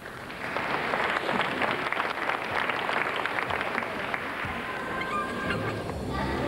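Arena audience applauding a caught release move on the high bar, swelling about half a second in and thinning out near the end.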